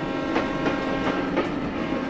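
Freight train crossing a steel truss railway bridge, its wheels clacking over the rail joints about three times a second, with held music tones underneath.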